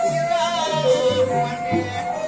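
Balinese gambuh ensemble playing: long, held bamboo flute tones that step between a few pitches over regular low drum strokes, with a wavering voice singing along.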